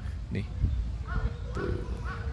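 Wind buffeting the microphone: a steady low rumble that rises and falls with the gusts.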